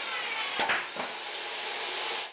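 SawStop jobsite table saw running without its riving knife as a board binds between the blade and the fence and is kicked back, with a sharp bang a little over half a second in. A high whine falls in pitch underneath.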